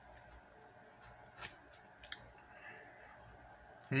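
Faint clicks of a metal spoon against a cup of hard-frozen Italian ice, the sharpest one about one and a half seconds in and another about two seconds in.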